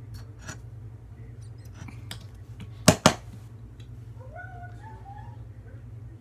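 Two sharp plastic clicks a fraction of a second apart, about three seconds in, from handling a baby lotion bottle, over a steady low hum. A short high, rising call follows about a second later.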